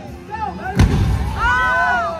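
A pyrotechnic explosion effect in a stunt show: one sharp, loud boom about a second in, followed by a low rumble lasting about a second.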